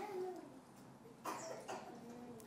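Two faint, brief vocal sounds: a short rising-then-falling murmur at the start, then a soft cough-like burst just past halfway.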